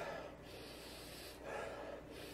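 A man sniffing into a beer glass held at his nose: two soft inhales through the nose, one right at the start and one about one and a half seconds in.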